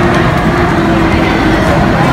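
Loud, steady din of a busy crowd of pedestrians, with a low rumble underneath.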